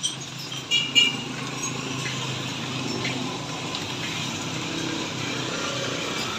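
Motor vehicle passing on a wet road, a steady engine hum under tyre hiss that swells through the middle. A couple of sharp clinks about a second in are the loudest sounds.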